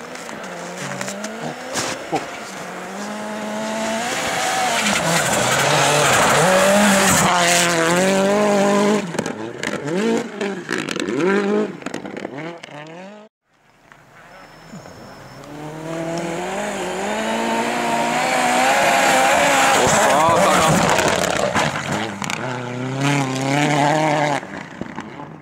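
Rally car engine revving hard, its note climbing and dropping with gear changes and lifts, swelling loud as the car passes. It happens twice, with an abrupt cut about thirteen seconds in between the two runs.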